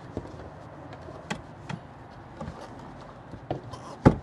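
A few light clicks and knocks from hands handling fittings in an SUV's boot, spread over several seconds above a faint steady background.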